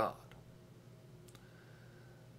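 The end of a man's spoken word, then a pause of quiet room tone with faint clicks a little over a second in.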